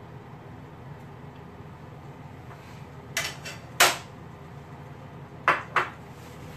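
A metal slotted spoon and dishes clinking: four short sharp clinks, a pair about three seconds in and another pair near the end, over a low steady background hum.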